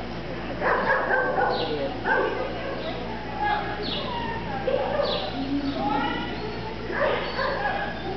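A dog barking repeatedly as it runs an agility course, with short loud barks and yips every second or so.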